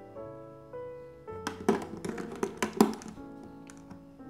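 Several sharp clicks and knocks over about a second and a half, starting about a second and a half in, as an AA battery is pressed into the battery holder of a wall clock's movement. Soft piano music plays throughout.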